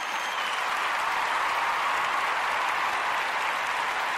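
Applause from a crowd: a steady wash of clapping and cheering that swells in the first second and holds.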